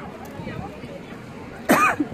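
Faint background voices, then near the end one short, loud vocal sound from a person close to the microphone.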